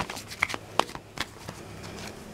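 A deck of tarot and oracle cards being shuffled and handled by hand, heard as about five short card snaps.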